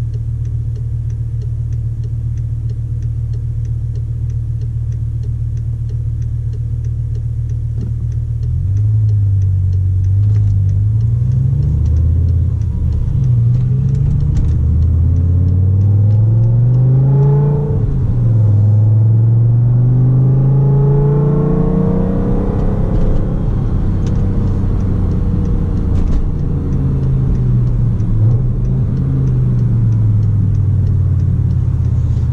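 BMW M5 E60's V10 with a G-Power bi-supercharger kit, heard from inside the cabin: it idles steadily at first. From about nine seconds in it pulls away and accelerates, its pitch climbing and dropping back several times through the gear changes.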